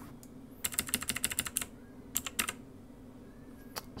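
Computer keyboard keys tapped in a quick run of about ten presses in a second, then two more taps and a last single one, over a quiet room hum.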